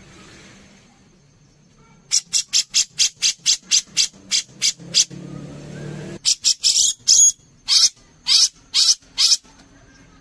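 Brown-cheeked bulbul (cucak jenggot) calling. From about two seconds in it gives a fast run of short, sharp, high notes, about four a second. From about six seconds it switches to fewer, longer and louder notes.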